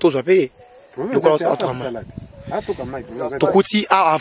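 People talking, with short pauses between phrases.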